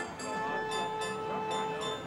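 Fairground carousel organ music: held, reedy chords with bright bell-like notes striking in an even rhythm about three times a second.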